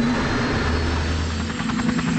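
Sikorsky helicopter running: a steady engine hum, with a fast, even chop of beats coming in toward the end.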